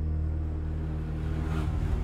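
Dark, low, droning background music with steady held bass tones. A short swell, like a whoosh, rises and falls near the end.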